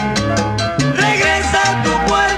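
Salsa band recording playing an instrumental passage with no singing: a steady bass line and regular percussion under pitched melodic lines that slide upward about a second in.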